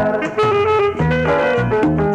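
Instrumental passage of a tropical dance band: horn lines with saxophone and electronic keyboard over a steady bass line and percussion, with no singing.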